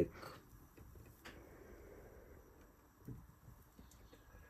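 Quiet room with a couple of faint handling clicks, one about a second in and a soft knock about three seconds in.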